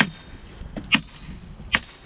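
A hammer tacker striking staples through plastic sheeting into a wooden raised-bed frame: three sharp strikes just under a second apart.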